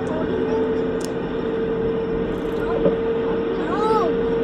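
Steady drone of a ship's engines, one constant hum, under a rush of wind and water on the open deck.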